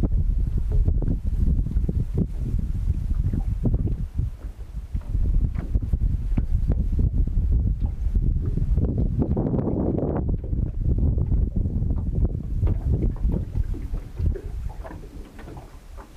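Wind buffeting the microphone: a loud, uneven low rumble that rises and falls with the gusts, strongest a little past the middle.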